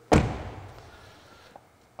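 A car door, the rear door of a 2021 Ford Mustang Mach-E, slammed shut once, a single sharp thud that echoes briefly in a large workshop.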